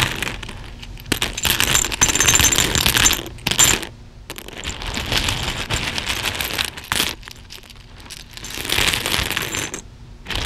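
A hand rummaging through a cloth-lined bowl of plastic buttons and beads, the pieces clicking and clattering against each other in bursts, with brief pauses about four seconds in and again around seven to eight seconds.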